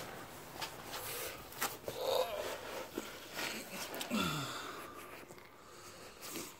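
A man's short grunts and breaths of effort, with clicks and rustles of movement, as he gets down under a car. One grunt comes about two seconds in and another, falling in pitch, just after four seconds.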